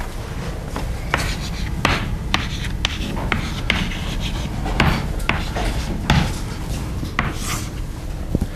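Chalk writing on a blackboard: irregular sharp taps and short scratching strokes, with a longer scratch near the end as a line is drawn, over a steady low room rumble.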